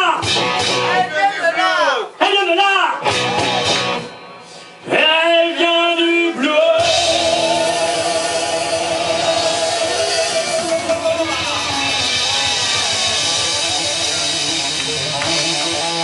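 A live rock band playing. A male singer sings over sparse backing for the first six seconds or so. Then the full band with electric guitars, bass and drum kit comes in, and a long note with vibrato is held for about four seconds.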